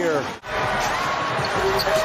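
Basketball arena game sound on a TV broadcast: a basketball being dribbled on the hardwood over a steady crowd murmur. The sound drops out briefly at an edit about half a second in.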